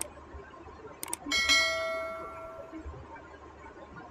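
Subscribe-button animation sound effect: a mouse click, then a quick double click about a second in, then a notification-bell ding that rings out and fades over about a second and a half.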